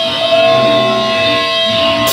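Electric guitars played loud through amplifiers, with several long held tones ringing over some strummed notes.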